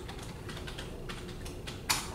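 A handful of light, irregular clicks and taps, with one sharper, louder click near the end, over a low steady room hum.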